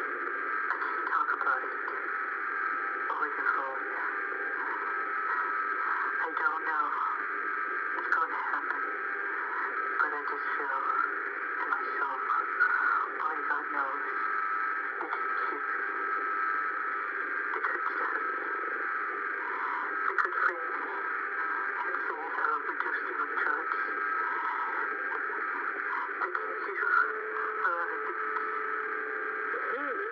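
A poor-quality recording of a telephone call: voices heard through a narrow, tinny phone line, hard to make out, under steady hiss and a few constant whining tones from the line.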